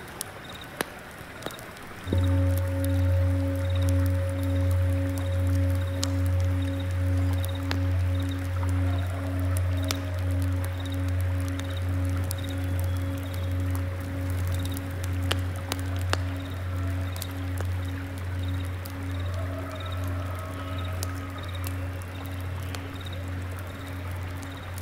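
A low-pitched singing bowl struck about two seconds in. It rings on with a slow, even wobbling pulse and fades gradually.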